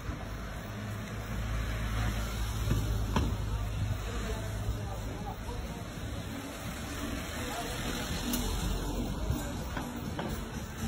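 Street ambience: a steady low rumble of traffic with indistinct voices of passers-by.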